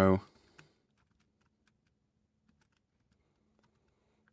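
Faint, scattered computer keyboard keystrokes and clicks, with one slightly louder click just over half a second in, against an otherwise quiet room.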